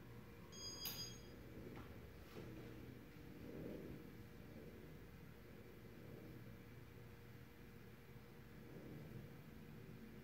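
1988 Casablanca Zephyr ceiling fan running steadily, a faint even hum with a thin steady tone. About a second in there is a single brief click with a short high ringing tone.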